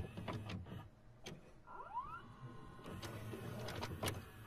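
A VCR's tape mechanism starting to play a tape, as a stock effect. There are a few sharp clicks and clunks and a motor whirring over a low hum, with a brief rising whine about halfway through.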